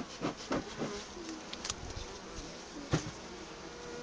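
Honeybee colony buzzing in an open hive, a steady low hum, with a few light clicks from handling.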